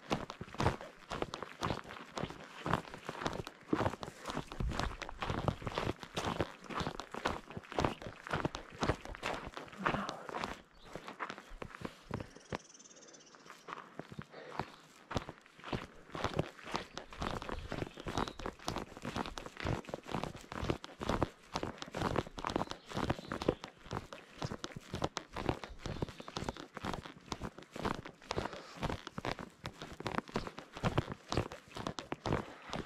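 Hiking-boot footsteps crunching on a dirt and gravel trail at a steady walking pace, about two steps a second, pausing for a few seconds a little before the middle.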